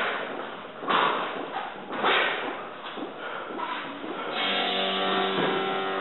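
Background music with several dull thuds in the first few seconds, typical of boxing gloves landing in sparring. From about four seconds in, the music turns to steady held notes.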